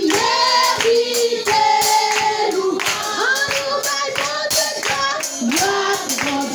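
A congregation singing a worship song together, with steady hand clapping on the beat.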